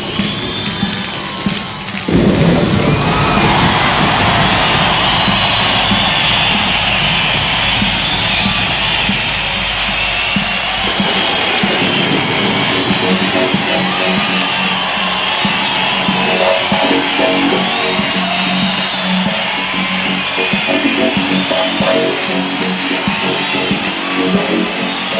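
Large concert crowd cheering, with hand claps in time at about one a second, as a live band starts a song. Sustained low band chords come in about eleven seconds in.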